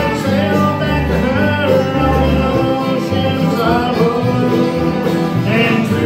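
A bluegrass band playing a song live, with mandolin, strummed acoustic guitars and upright bass, and men's voices singing over them. The bass holds low notes about a second apart.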